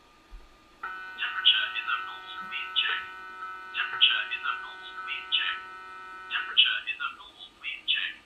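Hikvision temperature screening walk-through gate sounding its high-temperature alarm: a sustained electronic multi-tone alarm with rapid chirping pulses over it. The steady tone stops about six and a half seconds in and the chirps carry on briefly. The alarm is set off by a glass of hot water held to the forehead and read as an elevated skin temperature.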